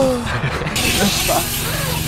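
A voice trails off in a falling laugh, then a bike rolls across skatepark concrete with a steady hiss of tyres that starts suddenly just under a second in.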